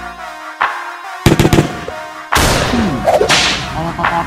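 A few sharp cracks in quick succession, then a long whoosh with falling tones, cutting into a pause in the intro music: edited transition sound effects.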